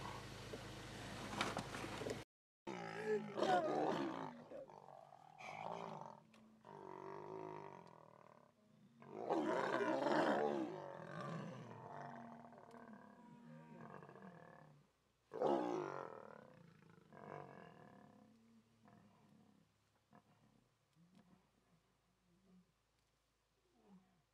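Lion roaring: three loud drawn-out calls about six seconds apart, with weaker calls in between, dying away to faint grunts near the end.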